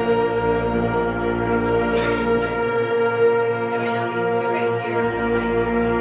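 High school concert band of woodwinds and brass playing sustained, held chords at a steady level, with a few brief clicks over the top.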